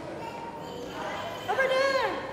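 A high-pitched voice calls out briefly near the end, a sustained vocal sound that rises and then falls in pitch, over the murmur of a large tiled room.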